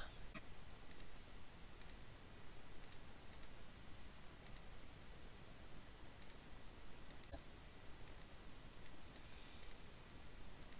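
Computer mouse button clicks, faint, most of them a quick press-and-release pair, coming irregularly about once a second over a low steady hiss.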